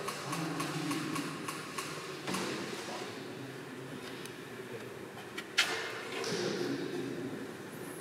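Quiet room ambience with faint low murmurs and a few small clicks, and one brief, sharper rustle a little past the middle.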